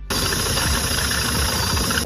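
Makita cordless drill running at speed as its bit bores through the sheet-steel floor of a 4WD's cargo area. It is a steady noise that starts abruptly just after the beginning and holds evenly throughout.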